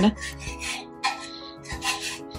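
A spatula scraping a pan on the stove in a few short strokes, the last one the loudest, over background music.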